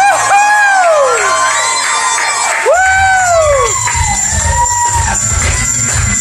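Bagpipes playing a steady, held tune while people in the audience whoop and cheer. There is a burst of rising-and-falling whoops at the start and another about three seconds in.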